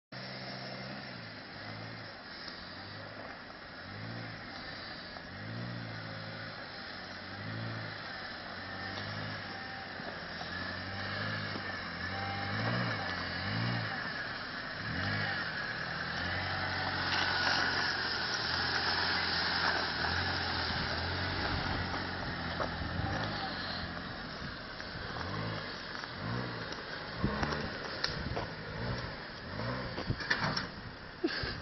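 Suzuki Jimny engine revving up and easing off again and again, every second or two, as the small 4x4 drives off-road over rough, muddy ground. It holds a longer, louder pull about halfway through.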